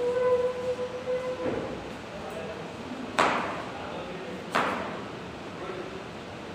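Two sharp knocks of a knife against a plastic chopping board on a steel table, about a second and a half apart, each ringing briefly in the tiled room. They are preceded by a short steady tone with overtones in the first second.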